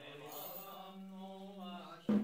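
A man's voice chanting a kagura song, holding one long steady note.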